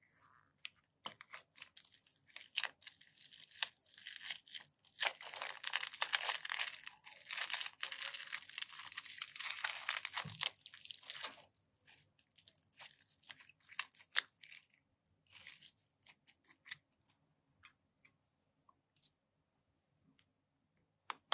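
A clear plastic piping bag full of small polymer-clay slices crinkling and tearing as it is squeezed and pulled open. There is a dense crackle from about two seconds in until about eleven seconds, then scattered light clicks and rustles.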